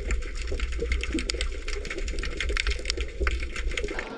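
Underwater reef ambience picked up by a submerged camera: a dense, irregular crackle of tiny clicks over a steady low rumble.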